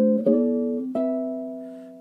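Archtop jazz guitar playing chords voiced in fourths, moving through the Dorian scale: one chord struck about a quarter second in and another at about one second, which is left to ring and fade out.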